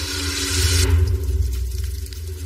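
TV transition sound effect: a whoosh that swells over about the first second and cuts off suddenly, followed by a deep rumble, over steady low tones.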